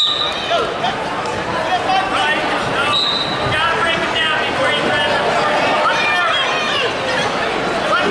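Spectators and coaches in a gymnasium shouting over one another, many voices at once. A short, high, steady tone cuts through about three seconds in.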